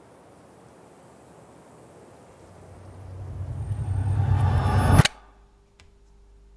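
A swelling whoosh that builds over about two and a half seconds to a loud peak and cuts off abruptly, the kind of riser sound effect used to lead into a cut. It is followed by a quiet room with a faint steady hum and a couple of soft clicks.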